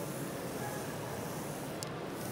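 Steady background noise of a busy exhibition hall, with a faint short tick near the end.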